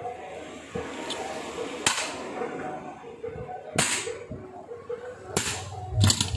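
Sharp knocks and clanks of a small electric motor's metal housing being handled on a workbench. Three louder knocks come a second and a half to two seconds apart.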